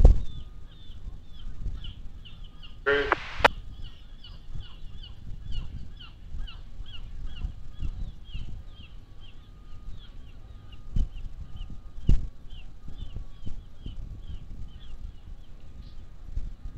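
A bird chirping over and over, about two or three short high chirps a second, with one short, louder honk-like call about three seconds in and low rumbling underneath.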